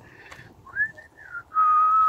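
A person whistling: a few short notes that rise and fall, then one long steady note, the loudest part, starting about a second and a half in.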